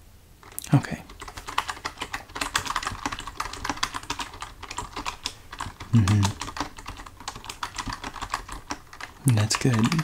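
Typing on a computer keyboard: a dense, uneven patter of key clicks starting about half a second in and running on. It is broken by a brief soft voice sound about six seconds in and more soft voice near the end.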